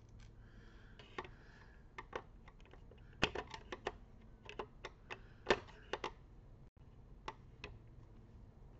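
A screwdriver working the screws of an all-in-one computer's aluminium stand makes a run of small, sharp, irregular metallic clicks and ticks as the screws are undone. The clicks come thickest in the middle.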